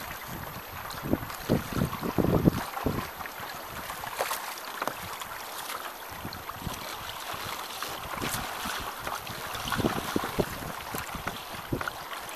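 Water washing and splashing along the orange plastic-pipe float of a small boat under way through choppy water. Wind gusts buffet the microphone, strongest between one and three seconds in.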